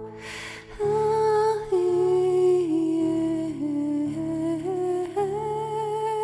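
Slow, wordless female humming over sustained low held notes of a meditative music backing. The melody steps down through the middle and rises again near the end, with a brief hiss just before it re-enters.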